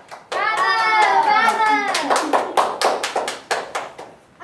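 Rhythmic hand clapping, about four or five claps a second, with children's voices chanting together over the first half.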